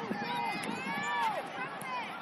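Several high-pitched voices shouting and calling out on a youth soccer field, overlapping rising-and-falling calls with no clear words, over a faint steady tone.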